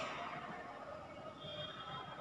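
Faint rubbing of a marker writing on a whiteboard, with a thin high squeak in the second half.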